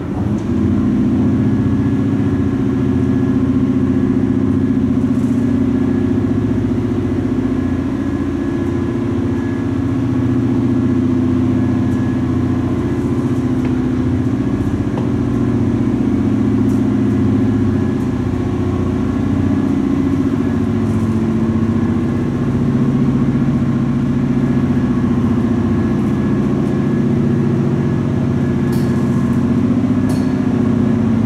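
Vintage Otis freight traction elevator's machine running as the car travels: a loud, steady motor hum with a faint higher whine over it.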